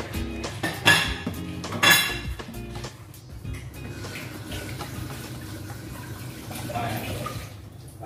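Metal spatula clanking and scraping against a metal tart pan as brownie pieces are lifted out: two sharp clanks about a second apart, then softer scraping.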